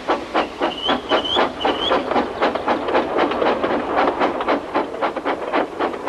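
Steam locomotive chuffing, a steady rhythm of about four hissing puffs a second, with three short high chirps about a second in.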